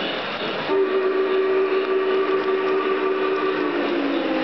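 Lionel toy train's built-in sound system blowing a held multi-note horn that starts about a second in and steps slightly lower near the end, over the steady rolling rumble of the trains running on the track.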